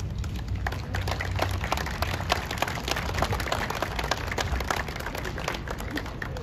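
Scattered applause from a small crowd, picking up about a second in and thinning out near the end, over a low steady rumble.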